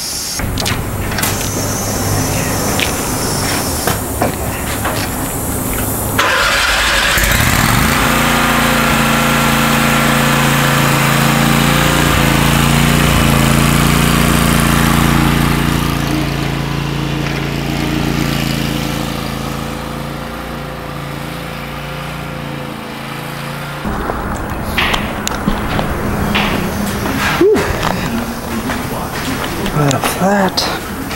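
Bobcat zero-turn mower's engine comes in several seconds in and runs steadily for about sixteen seconds, then drops away with a few sharp knocks near the end.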